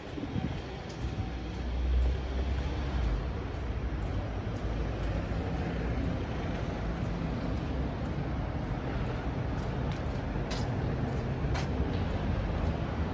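City street traffic noise: a steady rumble of road traffic, with a low rumble that swells and peaks about two seconds in, and two sharp clicks near the end.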